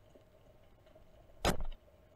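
Near silence, broken about one and a half seconds in by a single short, sharp click: a computer mouse button pressed to pause video playback.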